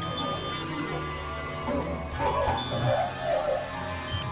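Layered experimental electronic music: several sustained tones and low drones overlapping, with a warbling cluster of sounds in the middle pitches from about two seconds in.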